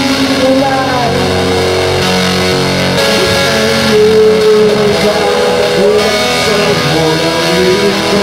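Rock music played on guitars, dense and loud, with melody notes that slide and bend between pitches.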